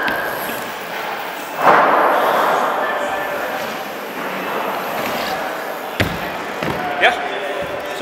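Small wheels of a Rocker mini BMX rolling on a wooden bowl ramp, with a loud swell of rolling noise about two seconds in, then a sharp knock about six seconds in and a few more knocks just after, as the bike comes down from a jump out of the ramp.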